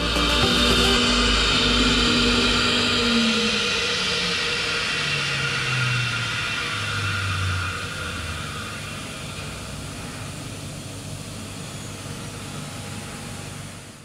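Flow bench running a cylinder-head flow test: a loud, steady rush of air drawn through the head's port that slowly fades away.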